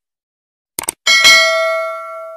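Subscribe-button animation sound effect: a couple of quick clicks, then a bell ding a second in that rings on in several tones and slowly fades.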